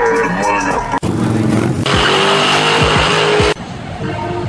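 Music, then after a sudden cut about a second in, a car's tyres squeal with its engine running for about two seconds. The sound stops abruptly, leaving quieter music.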